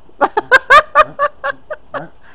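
A person laughing: a quick run of about ten short voiced bursts that fade out.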